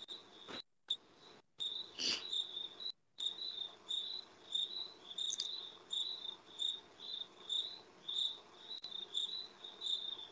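Insect chirping, a regular run of short high chirps about two to three a second, faint through an open video-call microphone that cuts out briefly a few times near the start.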